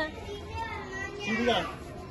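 People talking and chattering, with one clearer voice about a second and a half in.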